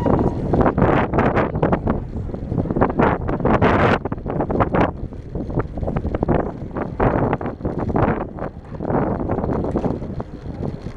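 Wind buffeting the microphone of a camera on a moving bicycle: a loud, irregular rumble that surges and eases in gusts.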